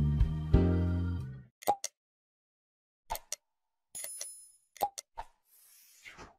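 Intro music chords ring out and fade over the first second and a half, followed by the sound effects of an animated subscribe graphic: a few sharp pops and clicks, a short bell-like ding about four seconds in, two more clicks, and a soft whoosh at the end.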